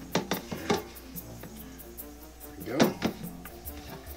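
Hands working pie dough in a stainless steel mixing bowl, with a few short knocks near the start, over background music.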